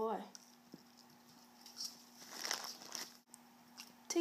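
Faint rustling and light handling sounds of an orange plastic pill bottle passing between an Italian greyhound puppy's mouth and a hand, mostly around two to three seconds in.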